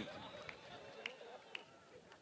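A pause in an open-air speech: faint background voices from the crowd, with three soft clicks about half a second apart.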